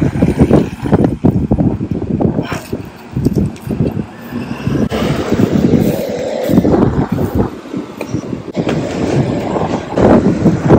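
Wind buffeting the phone's microphone: an irregular, gusty low rumble that rises and falls through the whole stretch.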